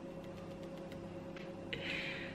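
Quiet room tone with a steady faint electrical hum, and a soft breath near the end.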